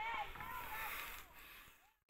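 A man's faint voice sounds, with no clear words, over light background hiss, fading out to silence near the end.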